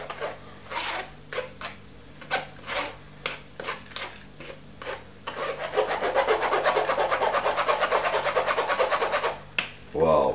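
Blended cucumber pulp being scraped and pressed through a mesh strainer to force the juice out. The scraping comes in scattered strokes at first, then from about halfway in a fast, even run of about eight strokes a second, with one sharp scrape near the end.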